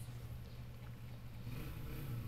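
Faint steady low hum with light background noise: room tone.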